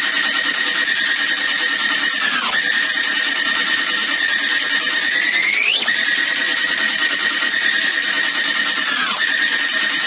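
Progressive psytrance breakdown with no kick drum: a single held high synth tone that dips down in pitch about two and a half seconds in, sweeps up near six seconds, and dips again near nine seconds.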